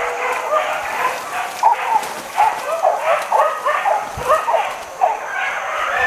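Leashed hunting dogs yelping and whining, a rapid string of short high-pitched yips.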